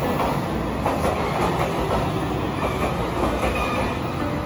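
Express train pulling in along the platform, its cars running past with a steady rumble and clatter of wheels over the rails. A faint high squeal comes in near the end.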